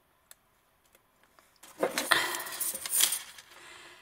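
Metal clattering and clinking for about two seconds from about a second and a half in, as a steel ruler is picked up and handled against twisted craft wire, after a single light click just after the start.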